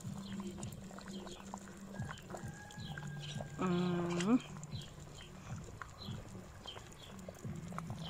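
Thick pea soup at a rolling boil in a cast-iron cauldron over a campfire, bubbling faintly. A farm animal bleats once, about three and a half seconds in; the call rises at its end and is the loudest sound.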